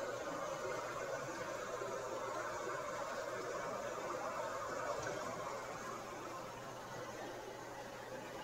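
Creek water running over rocks: a steady rushing hiss that eases off slightly near the end.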